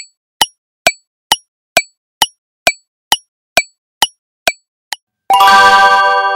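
Countdown timer sound effect ticking about twice a second, a dozen ticks, then a bright chime chord with a shimmering splash about five seconds in, the sting that marks the time running out and the answer being revealed.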